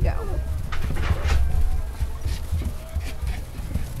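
English Cocker Spaniel puppies scuffling and playing in wood shavings: rustling and small knocks over low thumps of handling, with a few faint puppy squeaks.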